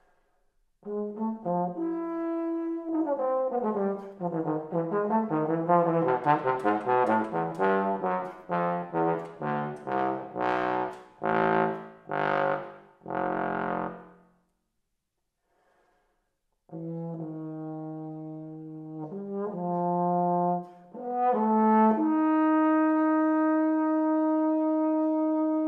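Unaccompanied bass trombone playing: a quick run of many notes moving up and down, then a string of short separated notes, a pause of about two seconds, and slower low notes ending on a long held note.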